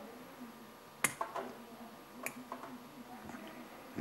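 Light clicks of small machined parts handled in the fingers: a Delrin bearing block with its ball bearings and the loose spacer inside. One sharp click about a second in, a few lighter ones right after, and another click a little past two seconds.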